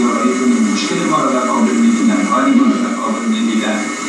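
Men's voices, speaking in a sing-song, chant-like way, from an old videotape played back on a television and re-recorded: thin and tinny, with no bass.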